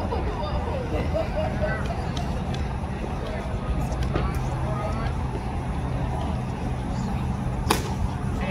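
A pitched baseball smacking into the catcher's leather mitt: one sharp pop near the end, over a steady low outdoor rumble and scattered faint voices.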